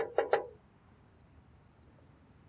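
Knocking on a sheet-metal gate: a quick run of raps in the first half second. After that, crickets chirping faintly in short, spaced chirps.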